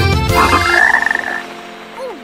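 A children's song ends about half a second in. A short buzzing, trilling sound effect follows, rising slightly in pitch and lasting under a second.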